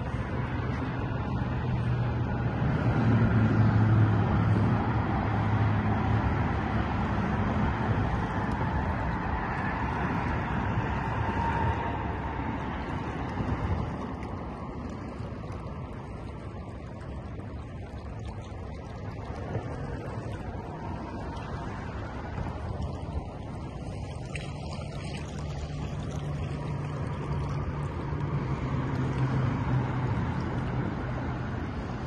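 Steady rush of road traffic on a nearby bridge, with a low engine hum that swells in the first several seconds, fades through the middle and returns near the end.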